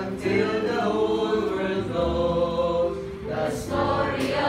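Mixed choir of men's and women's voices singing a gospel hymn in held notes of about a second each, with a short breath between phrases near the end.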